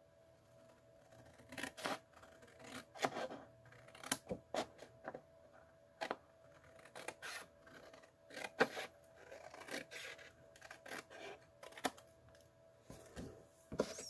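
Scissors cutting white card in a series of short, irregular snips along a curved line.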